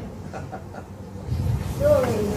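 A man blowing hard into a long modelling balloon to inflate it. The blowing starts about a second and a half in, with a brief falling squeak near the end.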